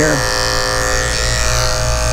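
Electric dog-grooming clipper fitted with a snap-on comb, running with a steady hum as it clips a puppy's curly coat.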